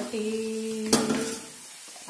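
Oil sizzling as dough deep-fries in a small pan, under a woman's steady held sung note that fades out after about a second and a half. A single sharp clink of a metal slotted spoon against the pan comes about a second in.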